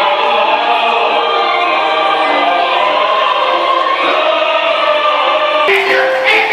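A choir singing with accompaniment, in long held notes. Just before the end the sound cuts abruptly to a brighter one: a girls' choir singing with drum hits.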